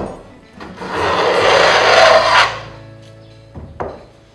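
Wooden hand plane taking one long shaving along the edge of a board: a rasping hiss that builds and fades over about two seconds. A sharp knock comes at the start and a couple of short knocks near the end.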